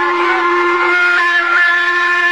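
A man's voice in melodic Quran recitation, holding one long vowel on a steady pitch.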